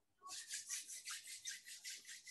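Hands brushing quickly down over hair and clothing, a rapid rasping rub of about six strokes a second.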